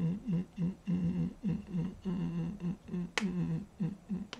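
A man humming or scatting a rhythmic tune in short, low notes, about three or four a second, with one sharp click a little after three seconds in.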